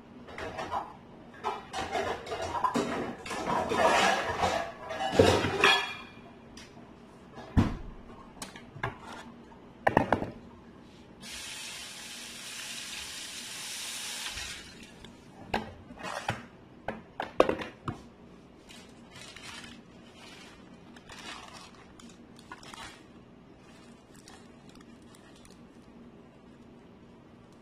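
Kitchen dishes and utensils clattering and knocking on a counter while food is prepared. The first six seconds hold dense clatter, followed by single sharp knocks. Between them, about eleven seconds in, comes a steady hissing rush lasting about three seconds.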